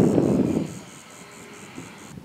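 Wind rumbling on the microphone, loudest in the first half second and then dying down, over a faint steady high hiss.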